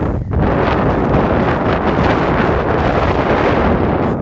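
Wind buffeting the microphone: a loud, steady rush with a deep rumble underneath.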